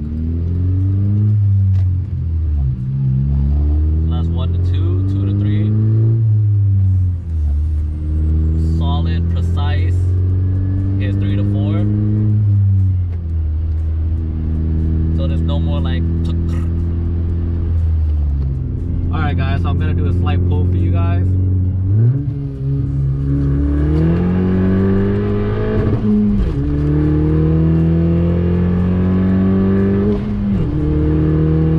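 Honda Civic Si's turbocharged 1.5-litre four-cylinder with an aftermarket race exhaust, heard from inside the cabin as the car is driven through the gears of its manual gearbox. The engine pitch rises under acceleration and drops at each upshift, about five times, with two steady cruising stretches in between. The shifts go through without gear crunch, which the owner credits to the new linkage bushings.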